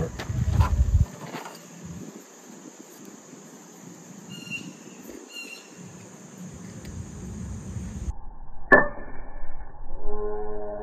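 A few sharp strikes of a steel made from a file against chert in the first couple of seconds, throwing sparks onto char cloth, then a quiet stretch. Near the end a whoosh transition effect cuts in, the loudest sound, followed by a sustained chime-like music tone.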